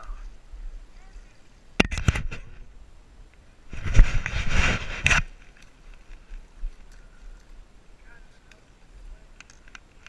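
A hooked largemouth bass splashing at the water's surface as it is reeled in beside the dock: a burst of splashing lasting about a second and a half near the middle, after a few sharp clicks about two seconds in.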